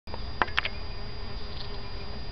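Bees buzzing steadily around a camellia flower, with a couple of brief clicks about half a second in.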